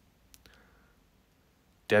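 A couple of faint, quick clicks about a third of a second in, then a quiet pause; a man's voice starts just before the end.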